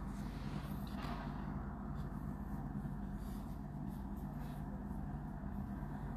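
Tow truck's engine idling: a steady low drone with a regular pulse, muffled through a window pane.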